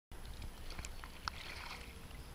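Faint water lapping and a few small splashes around a person floating in a wetsuit, over a low rumble.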